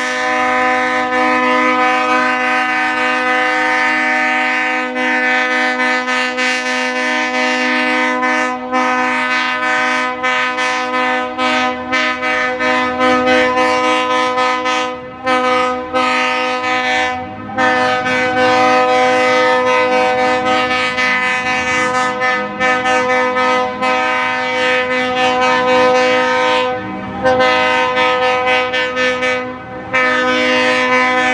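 Diesel locomotive air horn blowing one long, nearly unbroken blast at a steady pitch, with a few short breaks in the second half.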